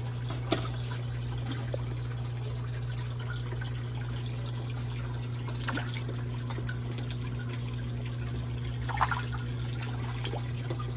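Steady trickle of water running into a backyard aquaponics fish pond over a steady low hum. Two short splashes come about half a second in and again near the end, as bluegill snatch floating food pellets at the surface.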